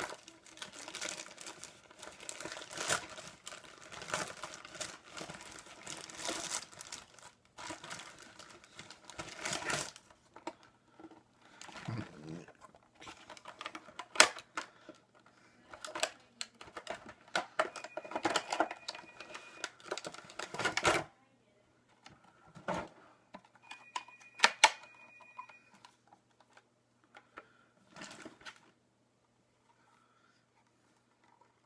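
Packaging being unwrapped by hand: dense crinkling and rustling for about the first ten seconds, then scattered clicks, taps and knocks of handling with pauses between. Two faint, high, steady tones sound briefly near the middle.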